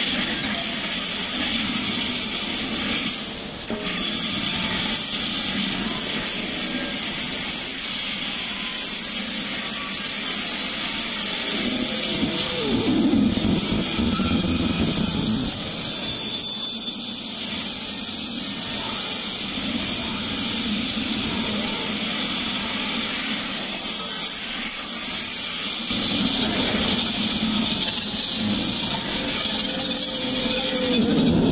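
Electronic music from Reason software synthesizers: a dense, noisy synth texture with low swooping tones now and then and a thin, high, steady tone held for several seconds about halfway through.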